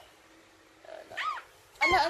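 A baby's short high-pitched squeals: a brief one about a second in, and a louder one near the end with a knock.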